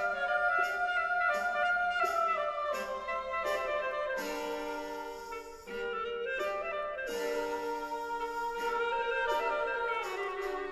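Orchestral classical music: a symphony orchestra holding sustained chords that shift to new harmonies every second or so.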